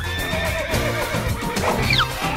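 Music with a horse whinny sound effect: a quick run of wavering, falling cries about half a second in.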